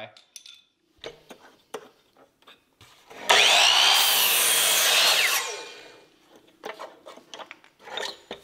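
Electric miter saw cutting an angle through a 2x4: after a few light knocks of the board being set in place, the saw starts about three seconds in, cuts loudly for about two seconds, then winds down and fades out.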